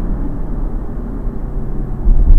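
Ferrari 458's 4.5-litre V8 running steadily while the car drives, heard from inside the open-top cabin along with road noise. Its loudness eases slightly.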